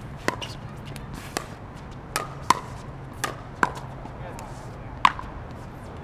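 Pickleball paddles striking a plastic pickleball in a quick rally: about seven sharp hits at uneven intervals, each with a brief ring, the loudest about five seconds in.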